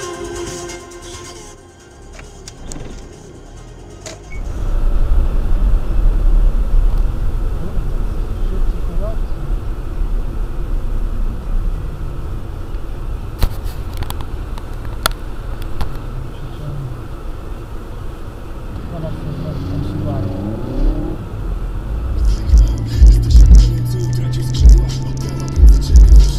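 Steady low road and engine rumble of a car driving, as picked up by a dashcam inside the cabin, starting a few seconds in after a quieter stretch. Near the end, music with a heavy regular beat comes in over it.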